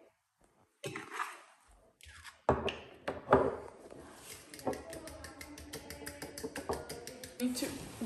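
A fork clinking against a ceramic bowl as egg-and-cream batter is stirred: a rapid run of light clicks and taps from about two and a half seconds in, under quiet talk.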